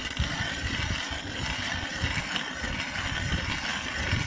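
Hand-cranked ice auger boring through lake ice, its spiral blade grinding steadily as it is turned.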